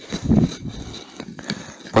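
Movement in snow and dry brush: a few irregular low crunches or thumps, then several light sharp clicks toward the end.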